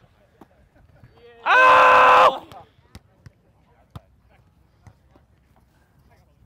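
A loud, held shout, under a second long, about a second and a half in, with a few faint short knocks before and after it.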